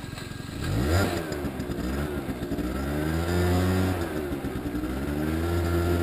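Aprilia SR50 scooter's small two-stroke engine, just restarted after stalling, revving up sharply about a second in and then running with its pitch rising and falling as the scooter moves off.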